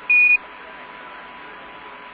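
A single short, high beep, a Quindar tone of the Apollo air-to-ground radio link marking the end of a transmission, followed by steady radio hiss.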